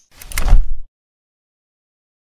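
Logo-intro sound effect: a whoosh that swells quickly into a deep low boom, cut off under a second in.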